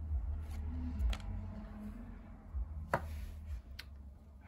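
Pokémon trading cards being handled by hand: faint rustling with a few light clicks as a card is moved aside, over a low steady hum.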